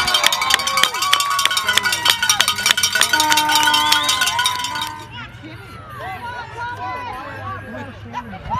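A cowbell rung fast by spectators, many clanks a second with a ringing tone, over shouting voices; the ringing stops about five seconds in and the crowd voices carry on.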